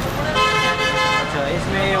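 A vehicle horn sounding once, a single steady tone held for about a second.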